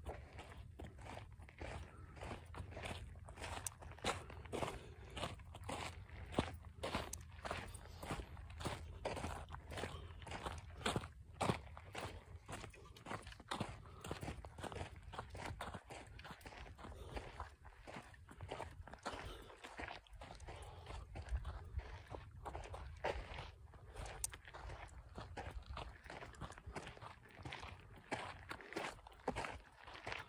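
Footsteps crunching on a dry, gravelly dirt trail at a steady walking pace.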